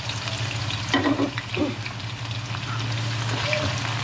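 Sliced onion frying in a pan of hot oil: a steady sizzle with fine crackles, at the start of frying while the onion is still raw.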